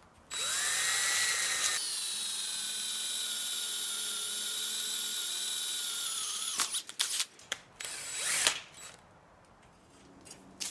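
Cordless drill boring a hole through flat mild steel bar by hand: the motor whines up, drops in pitch about two seconds in, and runs steadily under load for about five seconds before stopping. A few sharp clicks and a short burst of the drill follow near the end.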